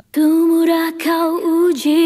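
A female lead vocal playing back on its own, holding a sung note with small wavers and a short break about a second in. Its low end is cut away by a high-pass EQ.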